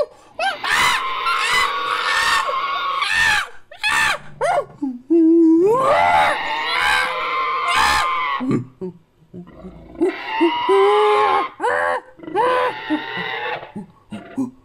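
Ape-like creature screams built from layered primate calls, coming in three long, shrill outbursts with short rising hoots between them.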